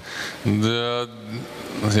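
A man's voice: one drawn-out hesitation sound held at a steady pitch for about a second, then the start of speech near the end.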